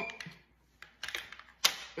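Several sharp clicks and taps of clear plastic food-dehydrator trays being handled, with the loudest click near the end.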